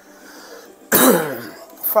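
A person coughs once, about a second in: a sudden harsh burst that drops in pitch as it fades. The speaker says her throat is hurting a lot.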